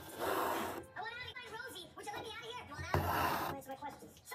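Voices talking in the background, with two short rasping swishes of embroidery floss being drawn through the fabric, one near the start and one about three seconds in.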